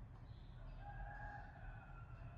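A faint, drawn-out animal call on a steady pitch, dropping slightly at its end.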